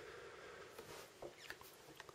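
Near silence with a few faint clicks and a short faint squeak about a second and a half in.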